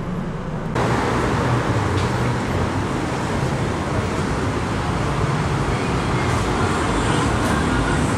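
Steady street noise of road traffic, with a low rumble. Under a second in it replaces car cabin noise.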